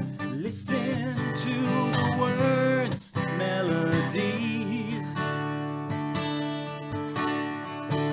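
Steel-string acoustic guitar strummed in a steady country rhythm, with a man singing a melodic line over it in roughly the first half before the guitar carries on alone.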